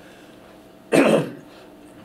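A man clears his throat with one short, harsh cough about a second in.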